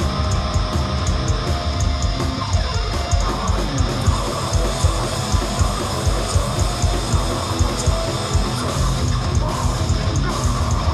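A hardcore punk band playing live, with distorted electric guitar, bass and drums at full volume. A steady beat of cymbal hits runs through it.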